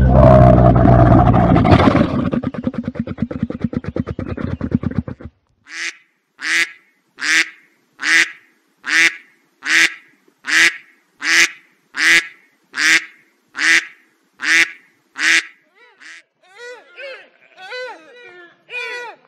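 A camel's call, long and low, breaking into rapid pulses and stopping about five seconds in. Then a duck quacking about thirteen times, evenly spaced a little over one a second. Near the end, fainter calls that bend in pitch begin.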